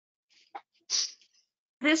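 A small click, then a short, sharp breath noise into a call participant's microphone about a second in, just before she starts to speak.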